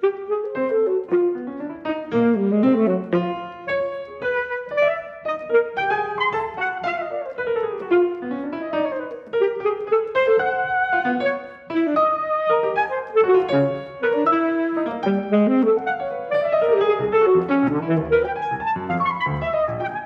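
Saxophone and piano playing a classical sonata together: a saxophone melody over busy piano chords, with a brief lull about halfway through.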